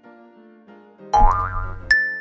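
Soft background music for children, with a cartoon sound effect about a second in: a rising boing over a low thud, ending in a short bright ding near the end.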